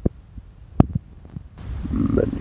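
Dark ambient background music: a few low, heartbeat-like thumps over a hum, with a swell of hiss building in near the end.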